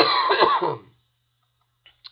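A man coughing into his cupped hands: one loud cough lasting under a second.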